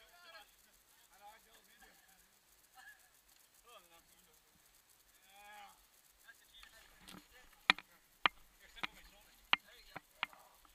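Faint, drawn-out shouts from people on the course, then a run of four sharp, loud knocks starting about three seconds before the end, each roughly half a second to a second after the last.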